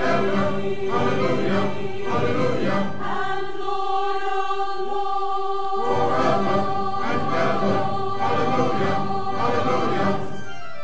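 A church choir singing a festive anthem, accompanied by brass and timpani, over long held chords.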